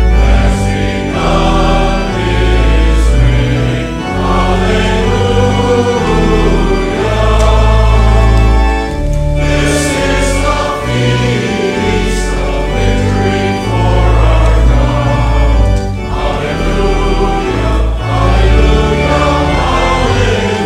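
A congregation singing a hymn together, many voices in unison, accompanied by sustained organ chords that change step by step.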